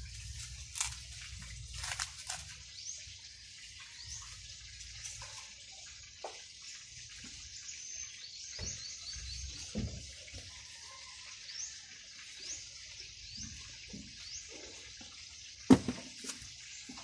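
Dry coconut husks handled and set onto a stack, giving scattered soft knocks over a steady high hiss with many short chirps. One sharp knock near the end is the loudest sound.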